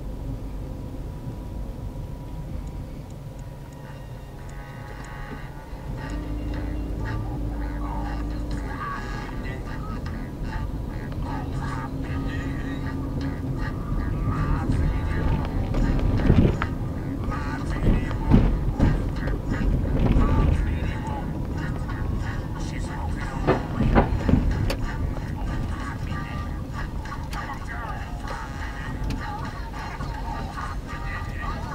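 Road and engine noise inside a moving car's cabin, a steady low rumble with louder peaks about halfway through, mixed with speech and music.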